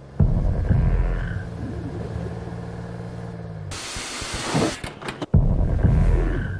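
Cinematic trailer sound design: a sudden deep rumbling hit with a low droning hum under it, an abrupt burst of hiss about two-thirds of the way through, then the same deep rumbling hit again near the end.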